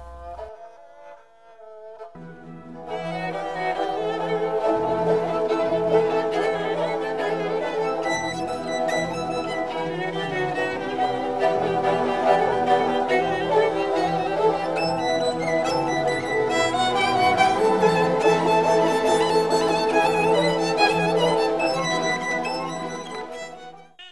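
Violin and kobyz playing a melody together, backed by a Kazakh folk instrument orchestra, in a live concert recording. The music is quiet for about the first two seconds, then comes in fully and fades out near the end.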